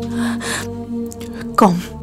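Background music of sustained, held tones, with a short breathy gasp-like sound about a second's first half in and a single spoken word near the end.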